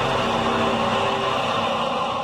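A steady, dense wash of noise with held tones beneath it, the show's soundtrack bed between segments.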